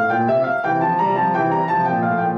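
Steinway & Sons grand piano played solo: a steady flow of notes, one after another without a pause.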